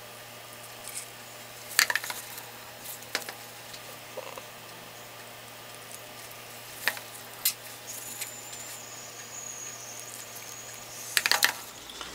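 Faint crackling and sizzling from a pot of dye water heated to just below boiling, with a few sharp clicks and taps over a steady low hum. A thin high whine comes in briefly in the second half.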